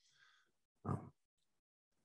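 Near silence, broken once about a second in by a short spoken "um" from a man.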